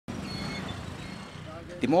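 Town street traffic: vehicle engines running in a steady background hum. A man's voice begins near the end.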